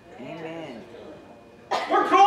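A short, soft vocal sound from a person in the room, then a man's voice breaking in loudly near the end.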